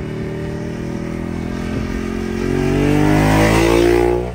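Ducati 1098R's L-twin engine through a Termignoni full racing exhaust, running steadily, then accelerating hard about halfway through, rising in pitch and getting louder toward the end.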